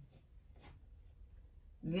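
Faint rustling and light taps of a deck of tarot cards being handled in the hands, between spoken words.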